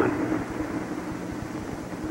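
Steady low rumble and hiss with a faint even hum, without any distinct event.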